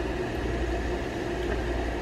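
Steady low mechanical hum with an even hiss, unchanging throughout.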